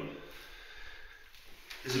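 A pause between a man's sentences: faint room noise, with a short breath just before he speaks again near the end.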